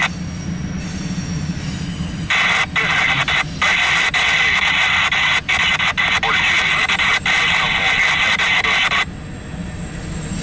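Railroad scanner radio hissing with static, switching on about two seconds in and cutting off suddenly about a second before the end, over the low rumble of freight cars rolling past.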